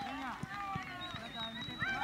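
Women football players shouting and calling to each other on the pitch, in short high-pitched calls that rise and fall, over the soft thuds of running feet on grass.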